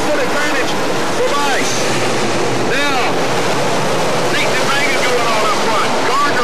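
Dirt-track sportsman race cars' engines running hard as the field goes by: a dense, continuous, loud sound with short rising-and-falling pitch sweeps as cars pass.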